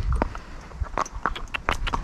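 A filly's hooves striking an asphalt road at a walk: a run of short, sharp hoofbeats, several a second.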